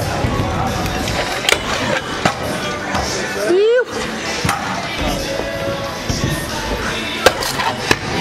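Stunt scooter wheels rolling across skatepark ramps and concrete, with a few sharp knocks from landings and deck contacts; the loudest knock comes near the end. A short rising whoop of a voice cuts in about halfway through.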